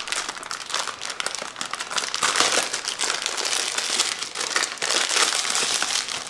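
A shiny plastic wrapper being crinkled and torn off a small toy wand box by hand, in a continuous rapid crinkling.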